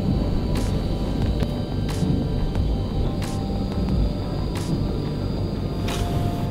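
Drive unit of a TIME 3220 handheld surface roughness tester running while its stylus traverses the test surface during a measurement: a steady low running noise with a faint tick about every 1.3 seconds.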